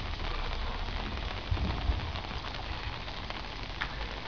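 Steady hiss of water with a low rumble underneath, and a faint click near the end.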